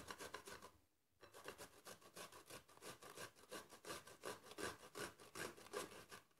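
Unpeeled cucumber being grated on a flat handheld metal grater: a faint, steady run of rasping strokes, about four a second, with a brief pause about a second in.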